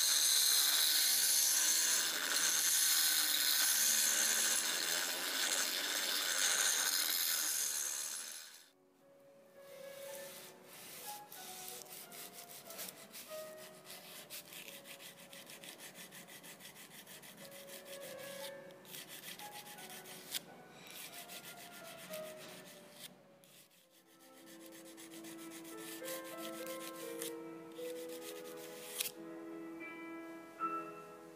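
Rotary tool with a small pink grinding stone running against the steel scissors handle, a loud steady hiss that cuts off about nine seconds in. Then quieter, repeated rasping strokes as the scissors blade, clamped in a vise, is filed at its edge, and soft piano music comes in near the end.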